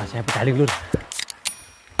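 A short break in the background electronic music: a brief snatch of a voice, a few sharp clicks, then a quiet stretch until the music starts again loudly at the very end.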